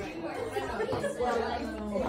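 Chatter of several people talking at once in a room, with no single voice standing out.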